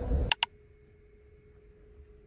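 Two sharp clicks in quick succession, then near silence with a faint steady hum.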